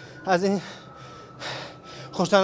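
A man's voice: one short spoken word, then a quick, audible intake of breath about a second and a half in.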